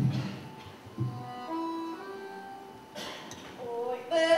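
A stage microphone being handled on its stand: a low thump at the start and a smaller one about a second in. Then quiet held melody notes step in pitch.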